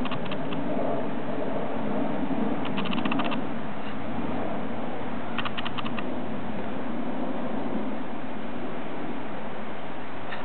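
Steady background noise with three short runs of rapid, sharp clicks: one at the start, one about three seconds in and one about five and a half seconds in.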